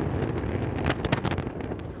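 Antares rocket exploding in a fireball over its launch pad: a deep rumble with sharp crackles and pops through it, thickest about halfway through.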